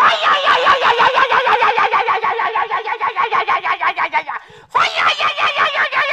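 A woman's voice shouting through a handheld megaphone: one long, rapidly pulsing call of about four and a half seconds, then after a brief break she shouts again.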